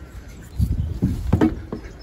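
Handling noise on a hand-held phone microphone as a person climbs into a tractor cab: clothing rustling against the mic, with a few dull, irregular thumps of body and feet against the cab.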